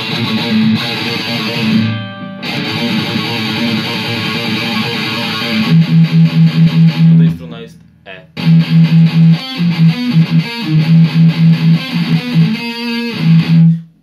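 Heavily distorted seven-string electric guitar through a Line 6 amp playing a dark, powerful riff built on the first fret and the open A string: ringing chords, a short stop about halfway, then fast low chugging notes, about five a second, that cut off sharply near the end.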